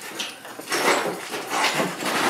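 A few short knocks and scrapes of broken concrete block rubble and a sledgehammer being handled.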